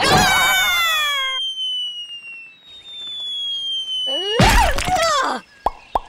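Cartoon sound effects: a wobbling spring boing, then a long falling whistle, then a loud crash about four and a half seconds in.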